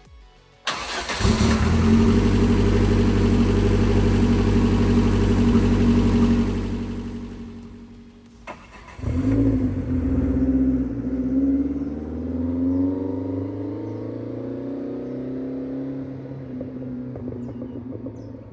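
Lotus Esprit S4s turbocharged four-cylinder engine starting abruptly about a second in and running at a loud, steady fast idle with a strong hiss over it, before fading away. After a click, an engine sound returns, its pitch rising and easing back in a light rev.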